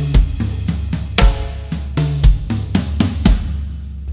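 Acoustic drum kit played with sticks: one bar of a busy groove on snare and toms over bass drum, with a heavy, ringing stroke about once a second. The last stroke comes about three and a quarter seconds in and rings out.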